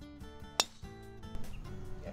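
A single sharp crack of a driver striking a golf ball off the tee, about half a second in and the loudest sound, over background music with plucked acoustic guitar.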